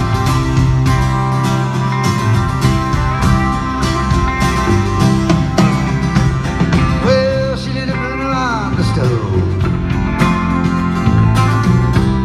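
A live band playing an instrumental passage between sung verses, heard from the audience in a concert hall. Past the middle, a melody line bends up and down in pitch.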